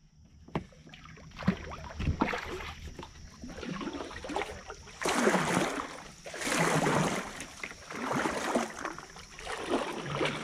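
Kayak paddle strokes in water: a few sharp knocks in the first seconds, then paddle splashes swelling about every second and a half through the second half.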